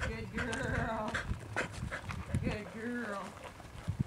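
Indistinct voices of people talking at a distance, in short phrases with a few sharp taps between them.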